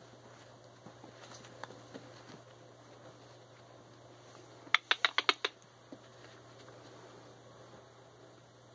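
Cane Corso puppy tugging and dragging a plush toy across carpet: soft rustling and scattered small ticks, with a quick run of about seven sharp clicks a little past halfway.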